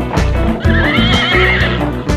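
A horse whinnying over music with a steady beat; the whinny comes in about half a second in, wavers in pitch and lasts about a second.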